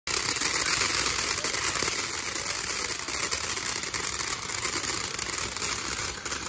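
Ground fountain firework spraying sparks: a steady, dense hiss with fine crackling.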